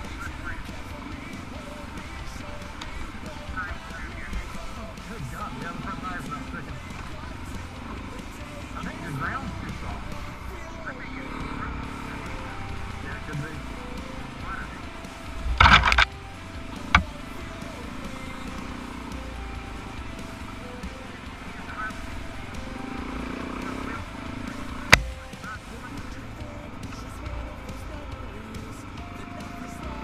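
Dirt bike engine running on a trail ride, muffled through a helmet-mounted action camera. A sharp knock about halfway through, a smaller one just after, and another near the end.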